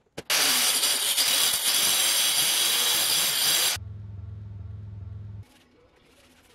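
A power saw cutting through a board along a clamped straightedge, starting abruptly just after the start and stopping sharply after about three and a half seconds. A steady low hum follows for under two seconds.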